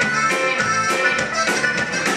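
A Tejano conjunto band playing live: button accordion leading over bajo sexto, electric bass and drums, in a steady, driving rhythm.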